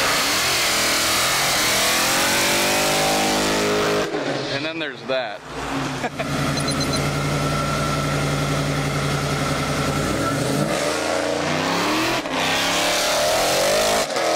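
Ford Mustang Cobra's V8 revving up and down, then held at steady high revs as it stages for a drag launch, rising again before it pulls away near the end. Voices are heard briefly about five seconds in.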